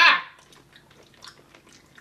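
A short, loud wordless vocal exclamation, then faint clicking mouth sounds of candy being chewed.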